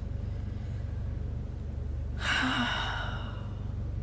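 A sigh: one breathy exhale of about a second, a little past halfway, over a steady low hum.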